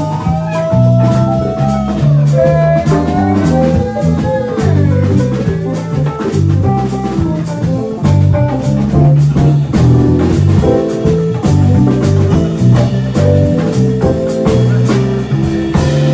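Live band playing an instrumental passage: bass guitar lines, keyboard and drum kit, with a held lead melody that bends in pitch over the first few seconds.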